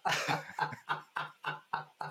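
Hearty laughter: a long run of short, evenly spaced 'ha' pulses, about four a second.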